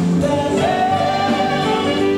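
Live band playing, with a lead line that holds one long note from about half a second in.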